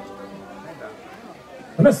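Low murmur of crowd chatter as the band's keyboard chord dies away at the start; a man begins speaking loudly over the PA near the end.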